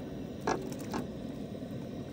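Drained penne being tipped from a steel pot into a pan of tomato sauce: a low, steady background with two soft knocks, about half a second and a second in.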